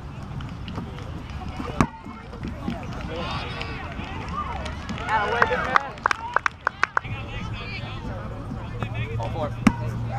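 Kickball players calling out and chattering on an open field, with a quick run of about six sharp claps around the middle and a steady low hum in the last few seconds.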